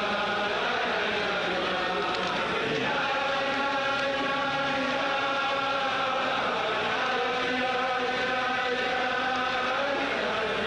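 A large crowd of men singing a Chassidic niggun together in unison, holding long steady notes of the melody.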